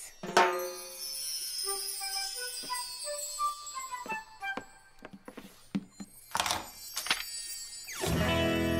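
Cartoon magic sparkle sound effect: a run of twinkling chime notes stepping down in pitch with a glittering shimmer above, followed by a short whoosh about six and a half seconds in.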